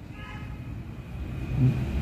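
Low rumble of a motor vehicle, swelling louder near the end, with a faint higher whine in the first second.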